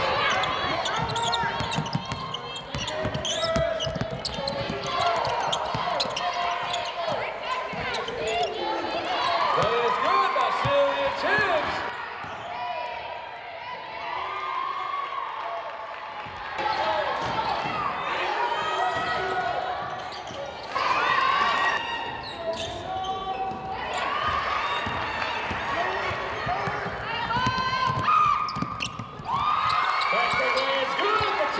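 Live game sound from a basketball court: a basketball bouncing on the hardwood floor, with voices echoing in the gym.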